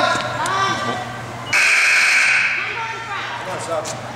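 Basketball scoreboard horn sounding once about a second and a half in, a harsh buzz lasting about a second that trails off in the gym, over scattered voices.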